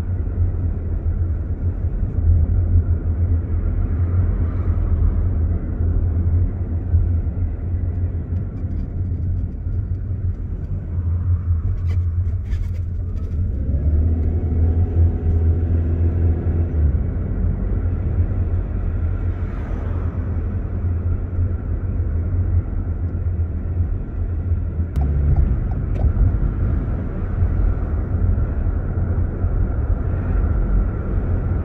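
Steady low rumble of a car's engine and tyres, heard from inside the moving car, with the engine note coming up for a few seconds past the halfway mark and a few brief ticks.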